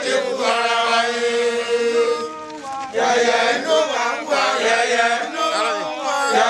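A crowd of people chanting together in unison. A long held note comes first, then a short lull near the middle, then the chanting picks up again.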